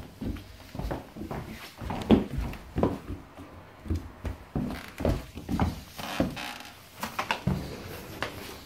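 Irregular soft knocks and shuffles of footsteps on a wooden floor, mixed with handling noise.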